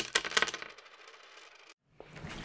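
Intro sound effect: a quick run of bright, clinking clicks, like dropped coins, that rings out and fades away about a second and a half in.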